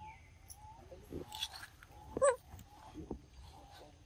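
Young macaque vocalising: a few faint high squeaks, then one louder, short squealing call about two seconds in.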